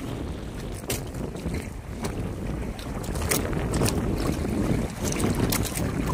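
Wind buffeting the microphone on a small wooden fishing boat at sea, with water washing around the hull in choppy waves. A few brief sharp sounds are scattered through the steady rush.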